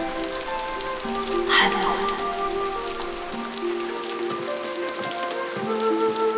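Steady rain falling, with soft background music of long held notes over it. A short swish about a second and a half in.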